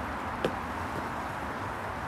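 Steady outdoor background noise of wind and distant hiss, with one short, sharp click about half a second in.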